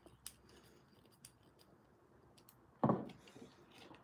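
Faint clicks from small objects being handled, then one sharp knock about three quarters of the way through that dies away quickly.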